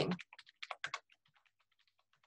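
Computer keyboard typing: a quick run of keystrokes in the first second, then a few fainter taps.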